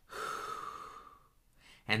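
A man demonstrating a deep breath: one audible breath lasting about a second, fading out before he speaks again.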